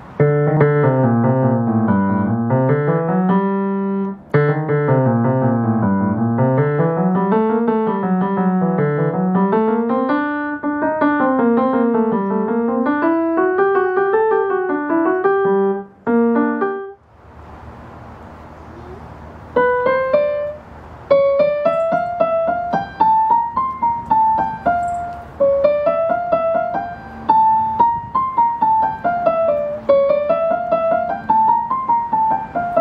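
Nord digital stage piano played through its red monitor speakers: a fast étude of rolling broken chords that rise and fall in the lower-middle range. About two thirds of the way in it breaks off briefly, then comes back as a higher line of quick, separate notes.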